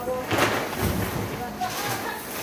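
Hard-shell suitcases being shifted and handled, with short rustling knocks about half a second in and again near the end, over faint voices.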